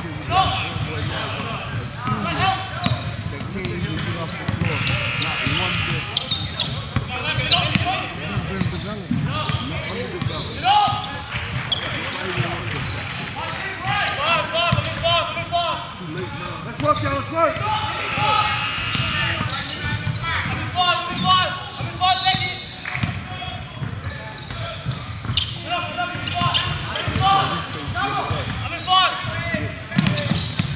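A basketball is dribbled on a hardwood gym court during a game, with indistinct voices of players and spectators throughout.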